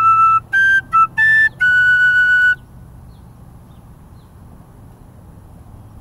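Metal tin whistle playing a short phrase of a Scottish strathspey tune: four quick notes, then a fifth held for about a second, ending about two and a half seconds in. After that only a low steady background hum remains.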